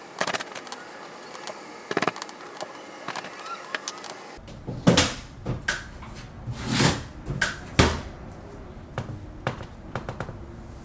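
Laundry being hung on a folding clothes drying rack: rustling fabric and scattered light clicks, with a few louder flaps or knocks in the second half.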